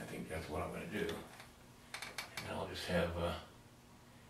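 A man talking quietly or muttering to himself, with a few sharp clicks about two seconds in.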